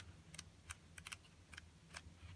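Faint, sharp paper ticks, about six in two seconds, as the pages of an old pulp digest magazine are handled and turned.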